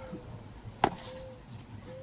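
A single sharp knock, like a chop into wood, about a second in. It sits over an outdoor background of insects trilling in short repeated bursts and soft, repeated low calls.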